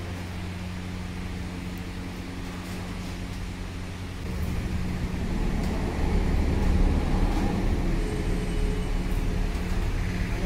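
Steady low motor hum, with a deeper rumble that grows louder about four to five seconds in.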